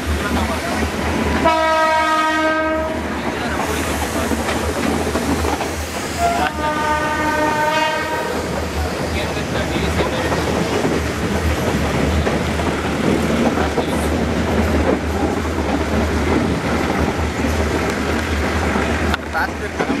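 Two blasts of a train horn, each about a second and a half long, the second about five seconds after the first. Beneath them, the steady rumble and wheel clatter of a moving metre-gauge passenger train, heard from its coach window.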